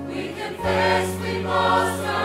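Church choir singing a hymn together over instrumental accompaniment, with a sustained bass note that moves to a new pitch about half a second in.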